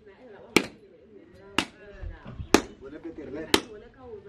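Sharp, evenly spaced knocks, one about every second, four in all, with people's voices talking between them.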